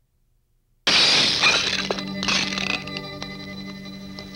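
Film soundtrack: under a second of near silence, then a sudden loud crash whose hiss fades over about a second. A few sharp knocks follow over a steady low held musical tone.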